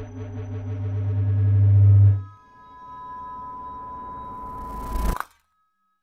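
Electronic logo-intro music and sound effects: a pulsing, bass-heavy rhythmic build that grows louder, then drops about two seconds in to a steady high electronic tone with a rising noise sweep that cuts off suddenly about five seconds in.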